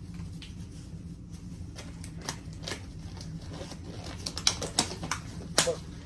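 Thin disposable gloves being stretched and pulled onto hands: a run of rubbery crackles and snaps that comes faster and louder near the end.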